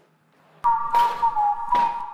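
A short musical sting that cuts in suddenly about two-thirds of a second in: a held, slightly wavering high tone over a couple of sharp hits.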